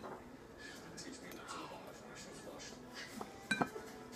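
Quiet room with faint whispered voices and a few light clicks about three and a half seconds in.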